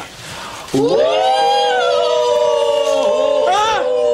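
Several voices wailing a long, loud 'woooo' together on cue, starting under a second in and held on steadily, with one voice rising and falling briefly near the end.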